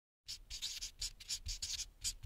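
Handwriting sound effect: about ten quick, scratchy pen strokes on paper, starting a quarter of a second in.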